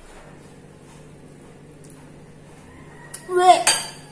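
A woman gives one short, loud, strained vocal cry near the end, a choked cough-like outburst while eating.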